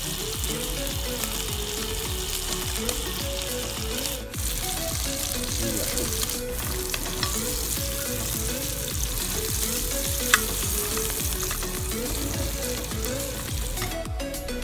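A pork chop and mushrooms frying in butter in a pan on a propane camp stove, a steady sizzle. Once, about ten seconds in, a metal fork or knife clicks sharply against the pan.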